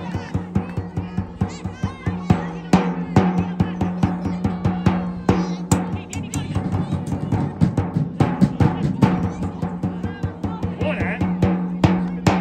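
Drumming in a quick, steady rhythm, several strikes a second, over a steady low tone.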